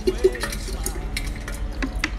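Ginger-and-lemon juice poured from a plastic bottle into a stainless steel insulated jug holding ice: a splashing trickle with small scattered clicks.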